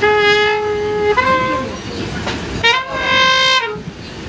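Trumpet playing a slow melody in held notes: a long note, a short higher one, a pause, then another long note, over the rumble of a train.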